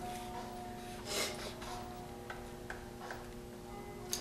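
Faint background music with steady held notes, and a few light clicks and a soft rustle of the handlebar being slipped back over the trike's steering spindle.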